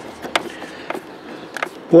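A few sharp, irregular clicks and small ticks of a hand screwdriver working the screws of the plastic heater blower housing.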